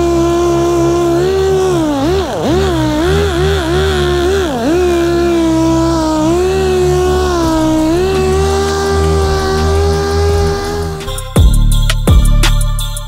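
3M random orbital air sander (6-inch, 5/16-inch orbit) running on primer: a steady whine whose pitch dips repeatedly as it is pressed into the work, then holds steady. About eleven seconds in it cuts off and music with drums begins.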